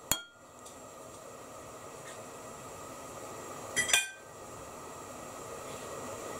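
A metal fork clinks once against a ceramic plate just after the start. A little under four seconds in comes a short cluster of ringing clinks of cutlery on china, over a steady faint hiss.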